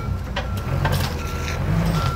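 Forklift backup alarm beeping steadily, about one beep every three-quarters of a second, over the low rumble of an engine running, as the forklift pulls back on a chain hooked to a ball mount stuck in a pickup's receiver hitch. A few sharp clanks come through, about half a second and a second in.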